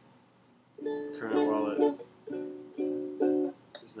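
Ukulele strummed by hand: about five short chord strokes starting about a second in, each ringing briefly and fading.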